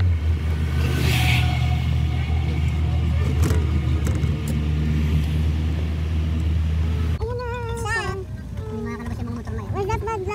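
Vehicle engine and road noise heard from inside the cabin while driving: a steady low drone. About seven seconds in it cuts off abruptly and voices talking take over.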